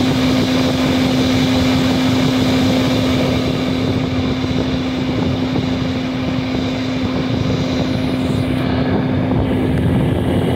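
Everlast 256Si inverter welder, powered up with its case open, running with a steady whir from its cooling fan and a constant hum. The hiss softens a little about halfway through.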